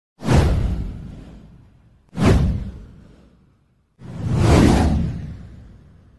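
Three whoosh sound effects for a title card, each a rushing swell with a deep rumble underneath that fades away over a second or two. The second comes about two seconds in; the third, about four seconds in, swells up more slowly.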